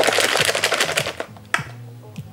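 Crinkling and rustling of a green foil shisha-tobacco pouch being pulled open, with a single sharp click about one and a half seconds in.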